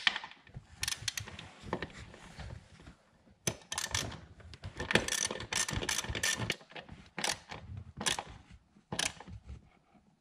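Ratchet wrench clicking in several short bursts, tightening a 10 mm ground bolt.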